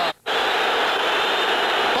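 Steady stadium crowd noise on an old television broadcast soundtrack, with a brief dropout in the sound just after the start.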